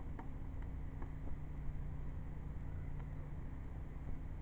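A faint steady low hum under an even background hiss, with a couple of faint clicks.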